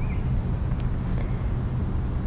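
Steady low outdoor rumble with no clear event in it, with a faint short high tick about halfway through.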